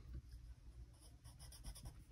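Graphite pencil scratching lightly on paper in several short, faint strokes as a small box on a printed sheet is shaded in.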